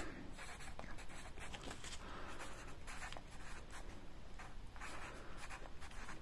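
Red pencil scratching on lined notebook paper as numbers are written down, a quick run of short, faint strokes.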